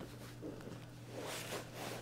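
Faint rustle of clothing and bodies shifting on a grappling mat, growing into a soft hiss in the second half, over a low steady room hum.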